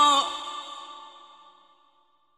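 A male Quran reciter's chanted voice holding the wavering final note of a verse. It breaks off about a quarter-second in and dies away in a long echo over the next second and a half.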